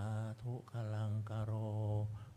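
A Buddhist monk chanting Pali words in a low, near-monotone voice, drawing out long held syllables with short breaks between them. This is the chanted closing formula of a sermon.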